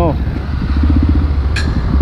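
Motorcycle engine running steadily under the rider in city traffic, heard with a loud low rumble on the helmet camera's microphone. Two sharp clicks come near the end.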